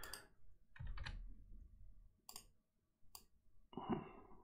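Faint, scattered computer mouse clicks and keyboard keystrokes, about four separate clicks, as a number is typed into a spreadsheet cell.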